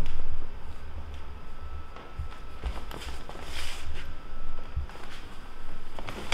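Quiet shuffling footsteps on a wooden floor, with a low rumble, a few soft knocks and a brief rustle about three and a half seconds in.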